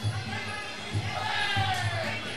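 Muay Thai ring music: low drum thumps beating every few tenths of a second under a wavering, falling high melody line, with a hall crowd behind it.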